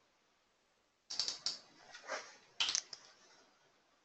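Computer keyboard keystrokes: a few sharp key taps in three short groups, starting about a second in, as a new number is typed into a settings field.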